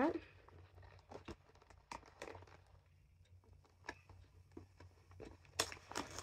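Hands working at a small taped cardboard box, trying to open it: faint, scattered taps, scrapes and rustles of cardboard, with a sharper click near the end.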